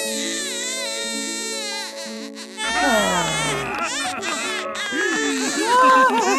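A cartoon newborn-creature's high-pitched wailing cry over background music, with a falling glide about three seconds in, followed by more wavering cries.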